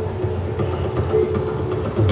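Steady background din of a large indoor sports arena during a gymnastics meet, with a low rumble and a few faint held tones.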